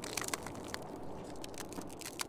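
Irregular crunching and crackling, as of steps on snow and ice, over a steady hiss of wind.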